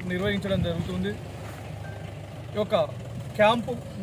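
A man speaking in two phrases, over a steady low rumble.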